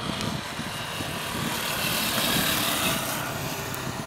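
A road vehicle passing on the road, a steady rush of tyre and engine noise that swells to its loudest about two seconds in and then eases off.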